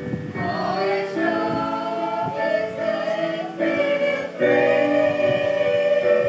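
Small church choir of women and a boy singing a gospel song together in long held notes; the singing swells louder about four and a half seconds in.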